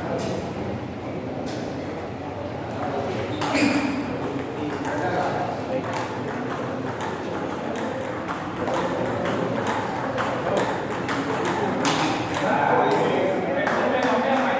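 A table tennis ball being hit back and forth, sharp clicks of the celluloid ball off the rubber bats and the table, with voices in the hall behind.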